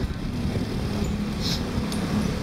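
Street traffic noise with small motorbike engines running, a steady low rumble and hum, with a brief click about one and a half seconds in.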